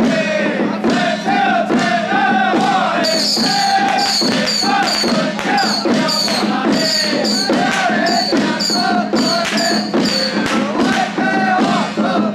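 A group of men chanting in unison while beating small handheld drums with sticks, in a steady rhythm. From about three seconds in until near the end, bright high-pitched accents come in roughly twice a second.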